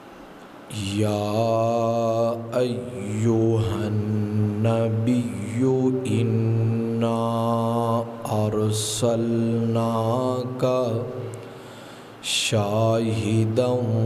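A man chanting a melodic religious recitation in long, drawn-out notes, beginning about a second in, with a short pause near the end before he carries on.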